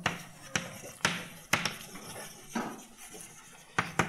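Chalk writing on a blackboard: about six sharp taps as the chalk strikes the board, with short scratchy strokes between them.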